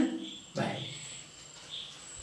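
A short vocal sound from the man about half a second in, then faint, high-pitched chirping of crickets or other insects in the background, with a steady thin high tone.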